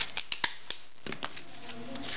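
Hard plastic trading-card holders being handled and pried open: a handful of light, sharp plastic clicks and taps, most of them in the first second or so.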